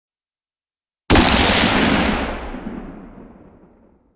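A single loud gunshot-like blast that starts suddenly about a second in and dies away over about three seconds, its high end fading first.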